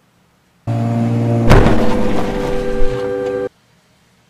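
Edited-in car crash sound effect: a loud sustained tone with a sharp crash about a second in. It starts and cuts off abruptly.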